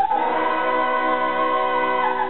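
Operatic soprano and tenor voices holding one long, steady note together, with an orchestra underneath; the note starts right at the beginning and ends just after the close.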